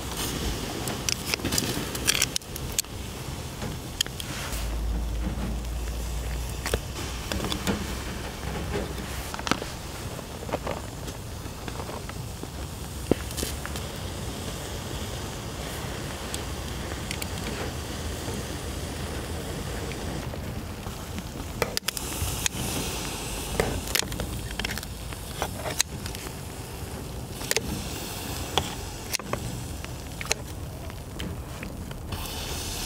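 Shellfish grilling on a wire mesh over charcoal: a steady sizzle with many sharp crackles and pops, along with clicks of metal tongs against shells and the grill.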